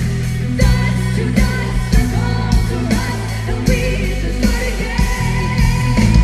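Live rock band playing: electric guitar, bass guitar and drum kit with regular cymbal hits, and a voice singing over the top.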